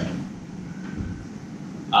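Pause in speech: a steady low room hum, with speech resuming at the very end.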